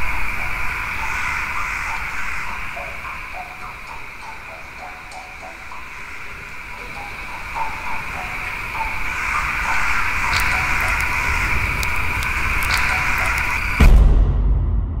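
A steady high-pitched hiss-like drone with scattered crackling clicks, ending in one loud, low boom.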